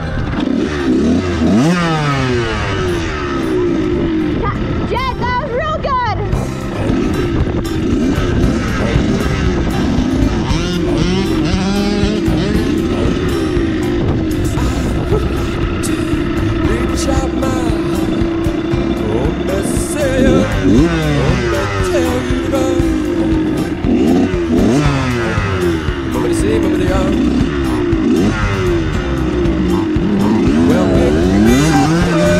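Dirt bike engines running and revving, their pitch rising and falling again and again as the bikes work up a hill trail. A higher-pitched rev sounds about five seconds in.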